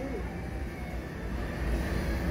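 Steady low rumble of supermarket background noise, with no distinct events.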